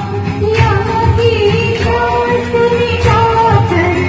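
Devotional aarti hymn sung with musical accompaniment, with a sustained melodic vocal line and a sharp struck beat a little under twice a second.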